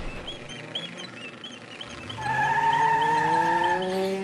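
Cartoon car sound effect: from about halfway a hum climbs slowly in pitch like an engine straining to get going, with a steady high squeal over it. Small chirps repeat faintly in the first half.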